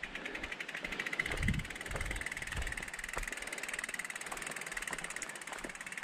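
Mountain bike coasting down a dirt trail: a fast, even ticking from the rear hub freewheeling, over tyre noise on the dirt, with a few low thumps from bumps between about one and a half and two and a half seconds in.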